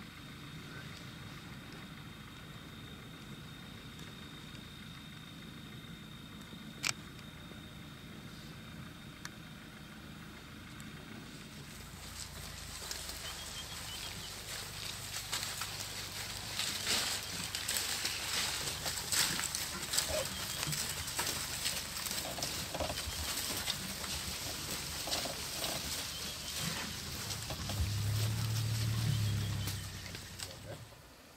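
An African elephant herd moving and feeding through dry bush: irregular snapping, rustling and crunching over a low hum, with a louder low rumble near the end. Before it comes a quieter stretch of steady night background with one high steady tone.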